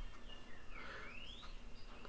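Faint bird call: a short whistled note, then a single rising whistle about a second in, over low background noise.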